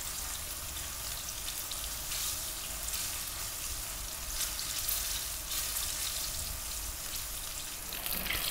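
Egg-and-cornstarch-coated chicken strips frying in a couple of centimetres of hot sunflower oil in a wok: a steady sizzle.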